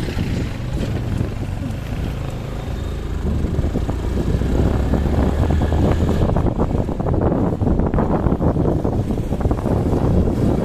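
Motorcycle engine running on the move, with wind buffeting the microphone. The rumble and buffeting get louder from about four seconds in.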